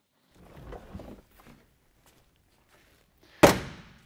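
Faint rustle and small clicks of a wiring harness and plastic electrical connectors being handled, then, near the end, a single loud thunk with a short ringing decay.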